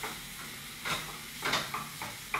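Crumbled hard tofu frying in a stainless steel skillet, sizzling steadily, while a spatula stirs and scrapes it in a few short strokes about one, one and a half and nearly two seconds in.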